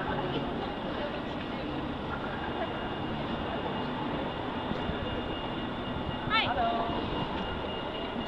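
Steady outdoor city background noise, a mix of distant traffic and people. A short burst of a voice comes a little over six seconds in.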